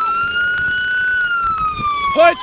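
Police car siren wailing: a slow rise and fall in pitch that reaches its highest point about a second in and then begins to fall.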